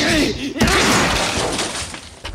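A short vocal cry, then about half a second in a loud crashing burst of noise that fades over the next second, like a hit or explosion sound effect in a tokusatsu fight scene.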